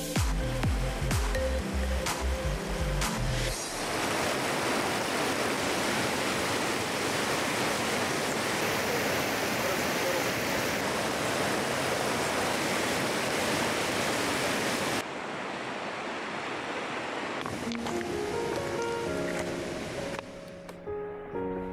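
Fast, shallow mountain river rushing over a pebble bed in whitewater rapids: a steady rush of water. Music with a beat plays for the first few seconds and comes back near the end, and the water turns a little quieter and duller about fifteen seconds in.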